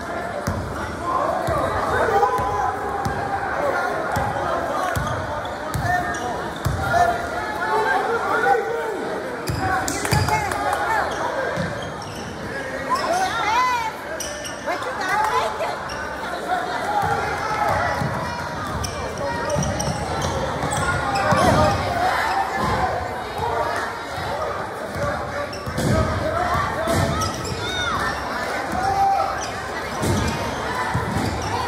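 Basketball bouncing on a gym floor during a game, with players and spectators calling out throughout.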